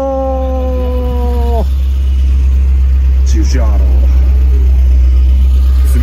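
Isuzu Piazza's G200 four-cylinder engine idling, a steady low rumble that grows slightly louder in the second half.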